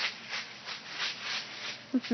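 A toddler's footsteps crunching through dry fallen leaves, a quick, even run of crunches several a second.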